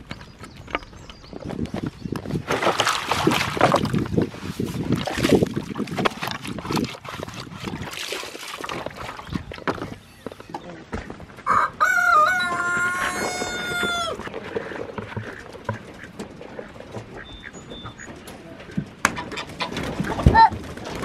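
Chickens clucking, with a rooster crowing once about twelve seconds in: a single long crow of about two seconds.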